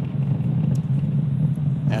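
Steady low rumble of the Falcon 9 first stage's nine Merlin 1D engines during ascent.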